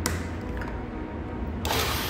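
A single sharp click from a panel-mounted changeover toggle switch, over a steady low hum. Near the end comes a short, loud burst of rustling noise.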